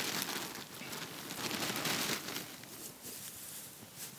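Dry straw rustling and crackling as it is handled and pressed down firmly into a terracotta pot, busier in the first couple of seconds and quieter after.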